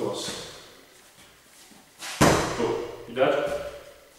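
A roundhouse kick landing on a hand-held kick shield: one sharp smack about two seconds in, the loudest sound here. A brief burst of a man's voice follows about a second later.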